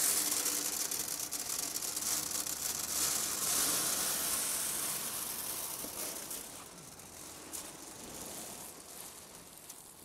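Dry corn kernels sliding and falling on the sheet-metal hopper of a grain crusher as a gloved hand sweeps them in: a dense hiss of small clicks that thins out after about six seconds.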